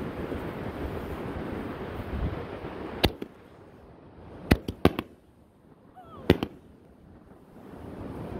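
Consumer 5-inch canister firework shell: a single sharp thump about three seconds in as the lift charge fires it from the mortar tube, then a quick cluster of sharp bangs and one more loud bang about three seconds later. Wind noise on the microphone comes before them and returns near the end.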